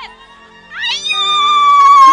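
A high, drawn-out cry of a person's voice that rises over about half a second and is then held as one steady note, from someone celebrating as the poem ends. A soft steady musical tone sounds beneath it.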